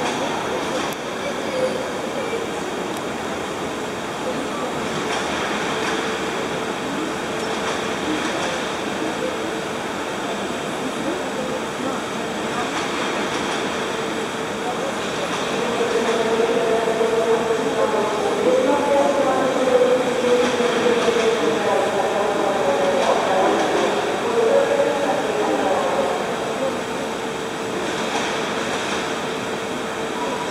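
Passenger coaches rolling slowly past, moved by a TEM18D diesel shunting locomotive, with a continuous rumble and a steady hum. About halfway through, a louder stretch of wavering high-pitched sound rises over the rumble for several seconds.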